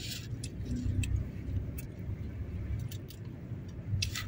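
Car interior noise while driving slowly: a steady low engine and road rumble with scattered light clicks and rattles at irregular intervals.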